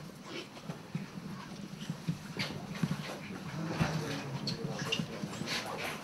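Crowd in a packed room: low indistinct murmuring and shuffling, with scattered clicks and knocks of people and the camera being jostled.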